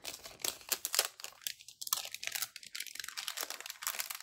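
Clear plastic packaging bag crinkling as it is pulled open and handled, a quick run of irregular crackles.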